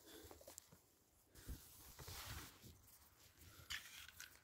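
Near silence with faint rustling and a few light clicks: handling noise from opening a summit register container.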